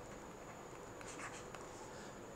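Faint scratching and light taps of a stylus writing on a tablet, with a faint steady high-pitched tone from the room.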